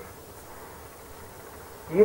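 A pause in speech filled by the steady low hum and faint hiss of an old home recording; a man's voice starts again right at the end.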